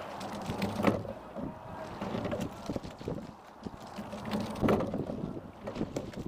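Single scull being rowed: a loud knock at each stroke, twice, about four seconds apart, over water noise along the hull and wind on the microphone.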